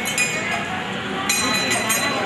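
Brass Hindu temple bell being rung by its clapper, clanging in quick strikes that ring on, with a fresh round of strikes a little past the middle.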